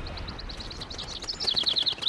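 Small birds chirping in a rapid run of short, high chirps. The chirps grow louder and busier about a second and a half in.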